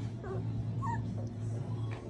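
Young Central Asian Shepherd puppies whimpering: two short, high, squeaky whines, one falling in pitch about a quarter second in and another just before one second in, over a steady low hum.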